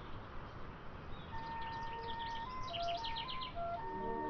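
Small songbirds chirping: two quick runs of high, rapid notes, the second denser, about a second and a half in and again near the end, over a thin line of held background-music notes.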